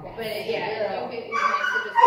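A dog whining in high, wavering whimpers, building toward the end, over voices in the background.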